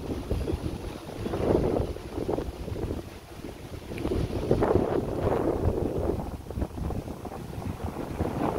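Wind buffeting a phone's microphone in gusts, a rumbling noise that swells and drops every couple of seconds.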